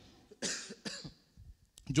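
A man coughing into his hand, twice: a short cough about half a second in and a shorter, fainter one just before a second in.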